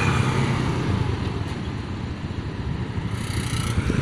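Steady rumble of vehicles moving in road traffic: engine and road noise, with a brief hiss a little after three seconds in.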